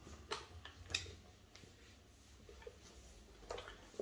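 Faint handling noise from a piano accordion: a few short clicks and light knocks as hands work its strap and buttons, the clearest about a third of a second and a second in, and another near the end.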